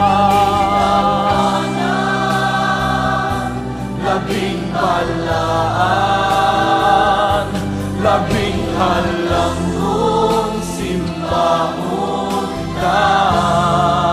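Christian worship song: sung vocals holding long, wavering notes in phrases a few seconds long over a steady low accompaniment.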